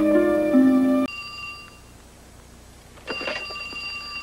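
Sustained chords of dramatic background music that cut off abruptly about a second in, then a quiet room. About three seconds in, a telephone starts ringing with a steady high ring, signalling an incoming call.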